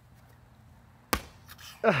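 A large inflatable play ball bouncing once on a concrete driveway, a single sharp smack about a second in.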